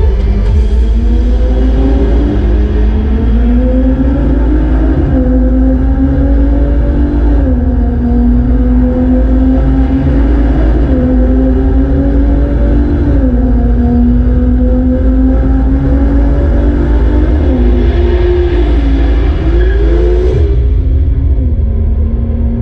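Recorded sports-car engine accelerating hard through the gears, played loud through the hall's loudspeakers with a deep bass rumble underneath. The engine note climbs steadily and drops sharply at each upshift, several times over.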